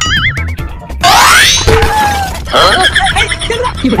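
Background music with a steady beat, overlaid with cartoon sound effects: a wobbling boing at the start and a fast rising glide about a second in, followed by more warbling effects.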